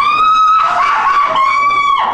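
A shrill, very high-pitched witch's shriek from a costumed stage performer: one long note sliding upward, then a run of shorter held notes.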